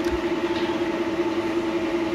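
A steady mechanical hum held at one constant pitch over a background hiss.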